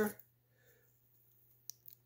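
Near silence, broken near the end by two short, faint clicks in quick succession.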